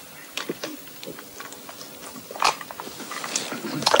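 A man gulping down a drink from a glass: a few soft swallowing and gulping sounds scattered across a quiet stretch.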